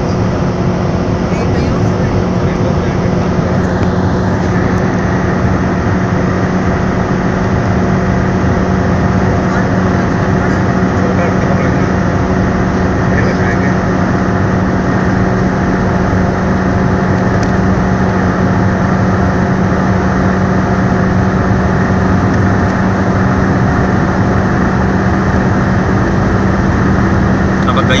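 Tata Manza's 1.4-litre Safire 90 four-cylinder petrol engine droning at high revs, near 5,500 rpm, while the car holds about 150–160 km/h close to its top speed. It is heard inside the cabin, mixed with wind and road noise. The pitch stays steady throughout.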